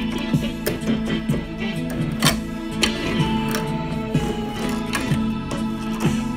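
Yamaha electronic keyboard sounding a dense, quick stream of notes over a steady held low tone.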